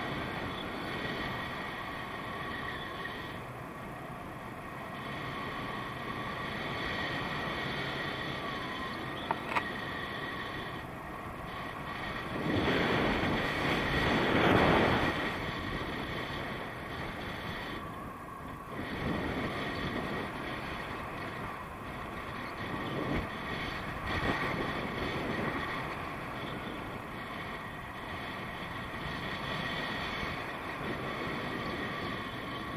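Wind rushing over an action camera's microphone in flight under a tandem paraglider, steady, swelling into a louder gust about halfway through. Two short clicks sound about nine seconds in.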